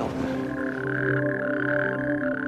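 Chorus of natterjack toads calling together, a steady churring band of sound, with a soft sustained music drone beneath it. This is the males' breeding chorus at the pond.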